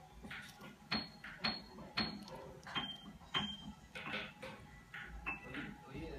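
Faint handling sounds from fishing line being tied onto a precision screwdriver's shaft: a series of small clicks, about two a second, several of them followed by a brief high tone.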